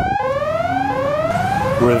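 Loud electronic siren-like alarm tone: a rising sweep that snaps back to a low pitch and repeats about every 0.7 seconds, about three sweeps in all.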